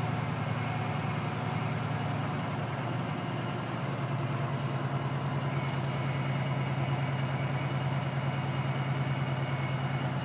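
Kenworth truck's diesel engine running at low speed, heard from inside the cab as a steady low drone.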